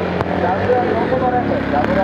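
An Aprilia SXV450 supermoto's V-twin engine running steadily as the bike works through a gymkhana cone course, heard under a voice commenting in Japanese.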